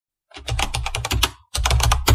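Computer keyboard typing: rapid keystroke clicks in two quick runs, with a brief break about halfway.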